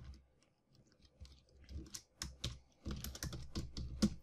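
Faint computer keyboard typing: scattered, irregular keystrokes starting about a second in and coming more thickly in the second half as a short word is typed.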